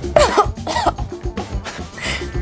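Two short coughs, about a quarter second and three quarters of a second in, from someone who has just swallowed a sip of neat spirit, over background music with a steady beat.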